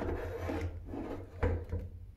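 Handling noise from a camera being moved and set down: rubbing and scraping close to the microphone, with a knock about one and a half seconds in.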